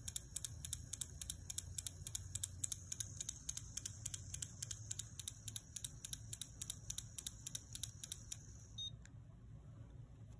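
Cordless endomotor running a rotary endodontic file in reverse reciprocating mode (150° reverse, 30° forward): a steady motor whine with fast, even ticking, about five a second, as the file swings back and forth. It stops with a small click shortly before the end.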